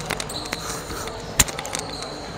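A basketball bouncing on a hardwood gym floor, a few separate bounces. The loudest is a sharp one about a second and a half in.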